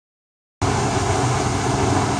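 Steady, loud background din of a crowded dance hall, cutting in abruptly about half a second in after silence.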